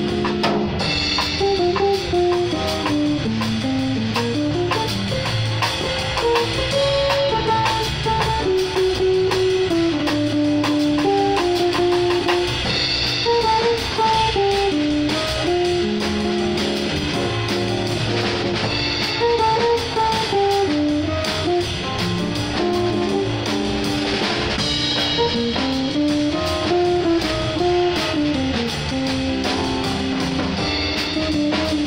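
Live jazz band: a hollow-body electric guitar plays a flowing single-note melody line over a drum kit with cymbals, at a steady volume throughout.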